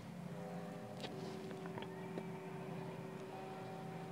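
Quiet inside a car: a faint steady hum of several held tones, with a few soft ticks.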